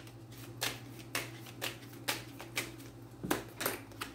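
A deck of tarot cards being shuffled by hand, the cards snapping together in short sharp clicks about twice a second.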